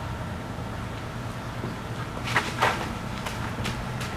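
Outdoor background noise with a steady low hum and a few soft taps or scuffs a little past halfway through.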